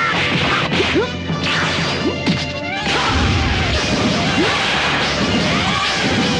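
Animated fight sound effects: a rapid run of punch and kick impacts with short whooshes over the first three seconds, then a steady noisy rumble, with background music underneath.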